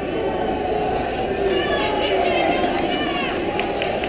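Crowd of spectators talking at once in a gymnasium, a steady hubbub of many overlapping voices, with a few raised voices in the second half.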